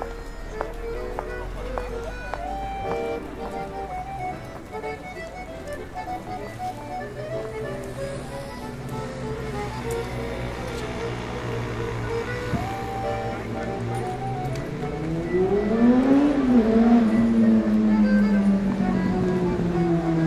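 A street accordion plays a melody of held notes over street traffic noise. About three-quarters of the way in, a motor vehicle passes close and becomes the loudest sound, its engine pitch rising, dropping and then sinking slowly as it goes by.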